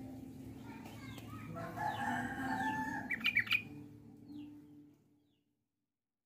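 A rooster crowing in the background, one long steady-pitched crow starting about one and a half seconds in. It is followed just after three seconds by a quick cluster of sharp, high chirps from caged yellow-vented bulbuls (trucukan).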